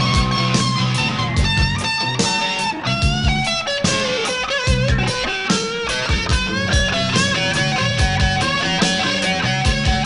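Live rock band: a lead electric guitar on a Les Paul-style guitar plays a melodic line with pitch bends and slides, over steady drums and bass.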